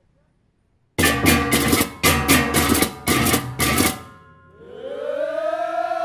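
Balinese baleganjur gamelan ensemble: after a second of silence, crash cymbals (ceng-ceng) and gongs strike together in three fast, loud phrases, then a group of voices swells into a long, sustained shout.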